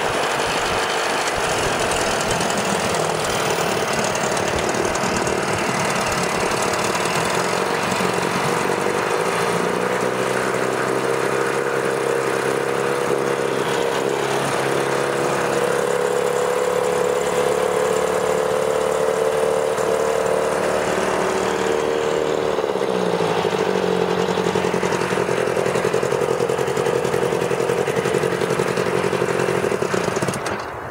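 A 1986 Evinrude 4 hp Yachtwin two-stroke twin outboard runs with its lower unit in a tub of water. About nine seconds in it speeds up, holds the higher speed for about twelve seconds, then drops back to idle at around 23 seconds.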